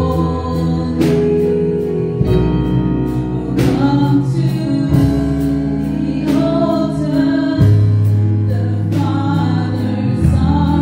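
A woman singing a gospel song into a microphone, amplified over a PA, with electronic keyboard accompaniment holding sustained chords that change every couple of seconds.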